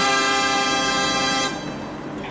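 An added sound effect: one steady horn-like tone held for about a second and a half, then stopping with a short fading tail.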